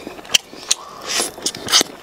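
Close-up eating sounds: a man biting and chewing meat off a braised lamb rib, with several sharp mouth clicks and smacks and short wet, hissy sucking noises.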